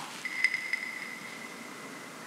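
A thin, high-pitched tone held steady and slowly fading, with two faint pings in its first second: a sound effect added in editing.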